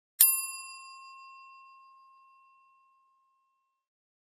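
A single bright bell-like ding sound effect, struck once and ringing away over about three seconds.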